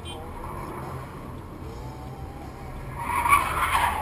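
Steady low road and engine rumble of a car, then about three seconds in a sudden loud noisy burst from a road accident.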